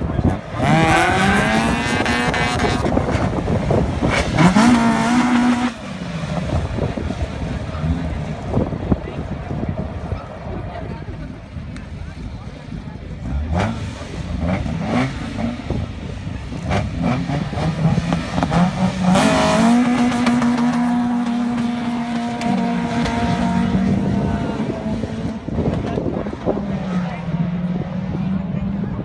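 Two Opel hatchbacks, a Kadett and a Corsa, revving their engines at a drag strip start line, with the pitch climbing and being held in the first few seconds. About 19 s in they launch, and the engines run hard and step through gear changes as the cars accelerate away down the strip.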